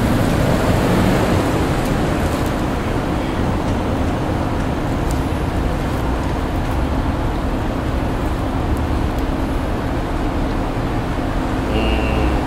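Street traffic: cars passing on a town street, a steady road noise with a low rumble.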